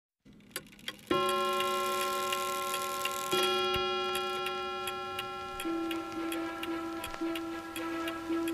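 A clock ticking steadily, with a ringing bell-like chime struck about a second in and again about three seconds in, each fading slowly. From a little past halfway the held note shifts and pulses as a musical soundtrack begins.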